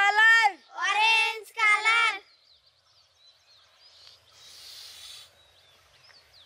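A child's voice calls out in long, held, sing-song notes for about two seconds. After a short quiet stretch with faint bird chirps, a breathy hiss comes about four to five seconds in as a boy blows air into a rubber rocket balloon to inflate it.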